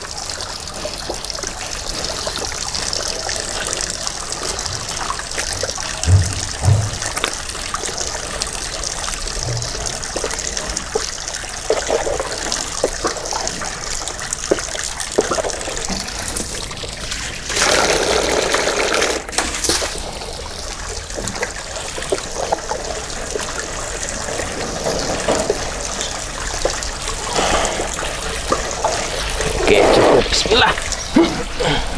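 Hands mixing a watery cattle feed mash of corn, concentrate and soybean in a plastic tub, with a steady trickling, sloshing water sound and small wet squelches. A louder rush of noise lasts about two seconds a little past halfway.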